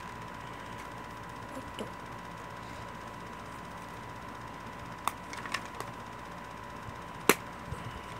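Quiet room tone: a steady faint hiss with a thin steady high whine, broken by a few light clicks in the second half, the sharpest about seven seconds in.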